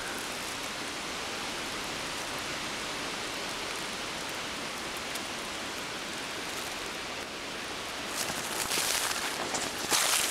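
Steady rain-like hiss of wind through the leaves of the surrounding trees. Near the end, crackling footsteps through dry undergrowth come in over it.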